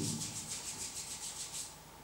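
Dry rubbing of skin, hands working against each other, in a quick even rasp that fades out near the end.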